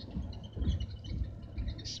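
Low rumble of a tour bus driving, engine and road noise heard inside the cabin, with a few heavier low thumps about half a second to a second in.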